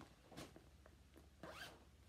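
Faint rustle and rasp of a clear plastic zip-top project bag being handled and unzipped: a short rasp about half a second in, then a longer one that rises in pitch about one and a half seconds in.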